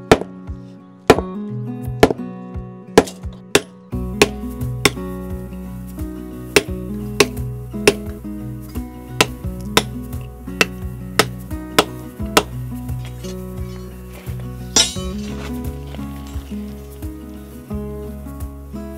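Hand hammer driving a steel chisel into a concrete sidewalk: repeated sharp metallic clinks, roughly one every half second to a second. Background music with a steady beat plays underneath.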